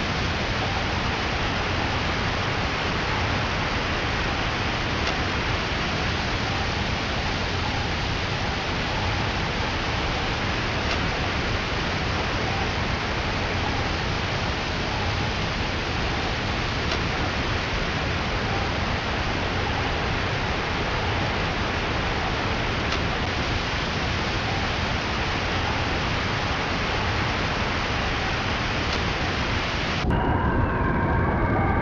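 A steady, even rushing hiss with no rhythm, pitch or change in level.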